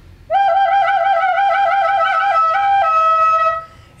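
A plastic recorder playing a short solo: a quick warbling trill on one note, then a brief higher note that drops to a held lower note, which stops shortly before the end.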